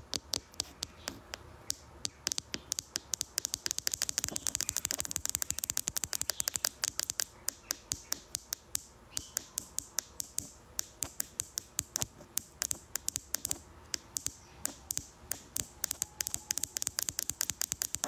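Long fingernails tapping on a phone's touchscreen, as in typing a message: runs of quick, sharp clicks, several a second, with short pauses.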